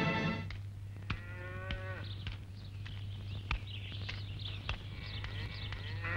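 A cow mooing once, a steady call of about a second that drops in pitch at its end, followed by faint bird twittering and a steady low hum underneath.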